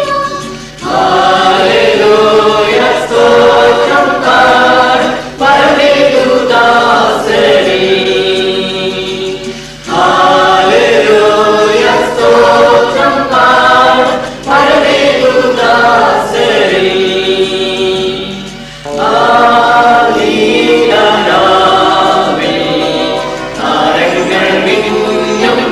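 Mixed choir of children and adults singing a Malayalam Christmas carol, in phrases of about four to five seconds with short breaks between them.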